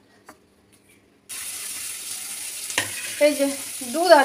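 Near silence for about a second, then a steady sizzling hiss starts abruptly, like food frying in a pan, with a few short spoken words near the end.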